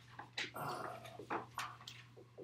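Dry-erase marker squeaking on a whiteboard in a few short writing strokes, with one longer squeak about half a second in.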